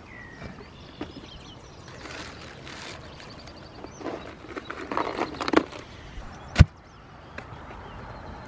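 Plastic cooler being handled: the lid clicks open, then ice rattles and scrapes as a hand digs through it. Later comes one sharp knock on the cooler lid.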